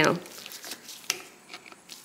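Faint rubbing and a few small clicks as a screwdriver tightens the presser bar screw on an antique Singer 27 sewing machine.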